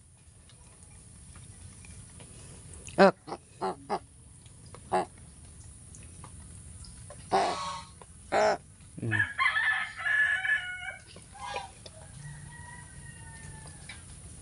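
Pet crows calling with short harsh calls: a quick string of them about three to five seconds in, two more a little later, then a longer, denser drawn-out call and a faint drawn-out one near the end.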